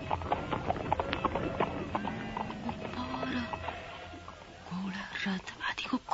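Radio-drama background music with a steady clicking beat, about three clicks a second, and held notes, fading about four seconds in. A voice starts near the end.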